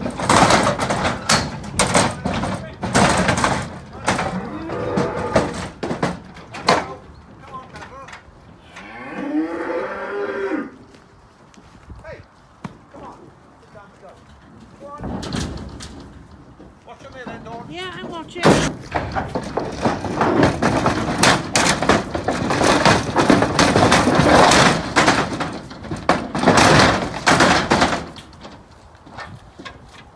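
Cattle mooing as they come off a livestock lorry: a long moo about nine seconds in and another around fifteen seconds. Between the calls come long stretches of loud, irregular clattering noise.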